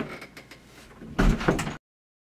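A door being shut: light clicks at the start, then a heavy knock about a second in. The sound cuts off abruptly shortly before the end.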